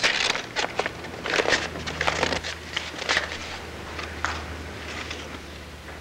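Torn sheets of paper sheet music rustling and crackling as the pieces are handled and laid out, in quick irregular rustles that thin out after about five seconds, over a low steady hum.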